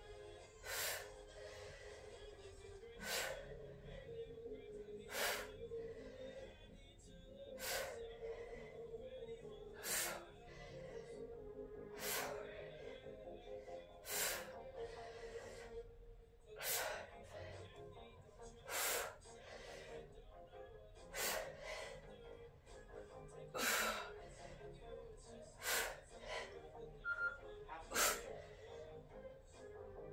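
A woman's hard, noisy breaths in a steady rhythm, one roughly every two seconds, as she works through overhead kettlebell reps. Faint background music runs underneath.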